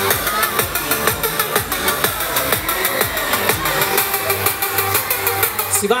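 Loud electronic dance music with a steady thumping beat from a fairground ride's sound system. A man's amplified voice calls out in Italian right at the end.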